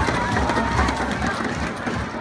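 Large crowd of spectators, many voices chattering and calling out over one another in a steady din.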